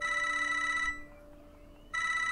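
A mobile phone ringing in trilling rings just under a second long, one at the start and another beginning near the end.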